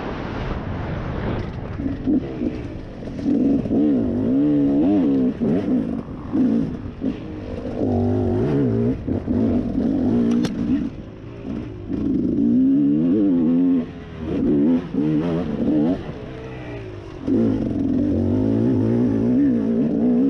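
Off-road dirt bike engine under constant throttle changes, its pitch rising and falling over and over as it revs up and drops back, with brief dips a few times as the throttle is rolled off. One sharp click about ten seconds in.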